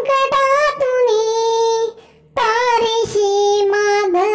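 A child singing a Marathi devotional prayer solo, in long held notes, with a short pause for breath about two seconds in.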